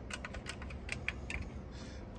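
Front-panel transport buttons of a Teac V-8030S cassette deck being pressed one after another with the deck switched off, giving a quick run of sharp plastic clicks that stops about a second and a half in.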